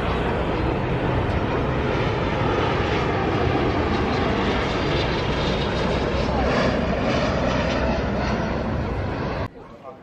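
Loud, steady engine noise with a low hum underneath, which cuts off suddenly about nine and a half seconds in.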